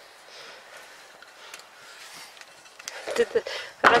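Quiet outdoor background with a few faint small clicks, then a man's voice starting about three seconds in.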